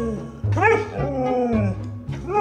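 Siberian husky 'talking': drawn-out, yowling vocalizations that rise and then fall in pitch, one tailing off just after the start and a longer one from about half a second in. Background music with a steady low beat runs underneath.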